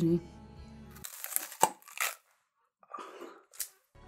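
A crisp crunch as teeth bite into a whole raw onion about a second in, then a brief pause and a stretch of crunchy chewing.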